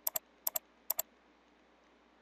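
Computer mouse button clicked three times within about a second, each click a quick press-and-release pair, over faint steady hiss.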